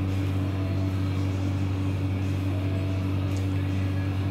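A steady low mechanical hum, even and unbroken.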